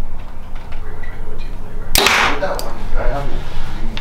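Prime Inline 3 (33-inch) compound bow shot after a long held draw: the string releases about two seconds in with one sharp crack and a brief ring. A few smaller clicks follow within the next second and a half.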